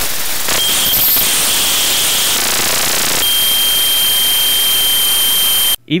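Electromagnetic interference from a phone charger in quick-charge mode, made audible through the Ear Tool, an inductive-sensor EMI detector. It is a loud, steady hiss with thin, high whines on top. The whines change pitch about a second in and again about three seconds in, and the sound cuts off suddenly near the end.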